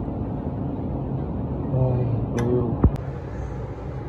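Steady low mechanical hum of running kitchen machinery, with a brief mumbled voice about two seconds in and a sharp knock shortly before three seconds.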